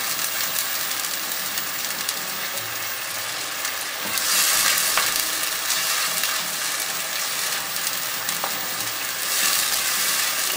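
Onion and garlic-ginger paste sizzling in hot oil in a non-stick pot, stirred with a silicone spatula, as the onion's water cooks off. The sizzle swells louder about four seconds in.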